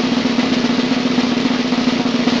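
Intro music: a steady, rapid snare drum roll over a low held tone.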